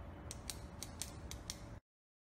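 Short mechanical sound effect: a low rumble with six sharp clicks falling in pairs, about two pairs a second, cut off abruptly.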